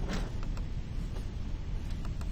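A few faint clicks of a computer mouse over a steady low background hum. A short rush of noise comes just after the start.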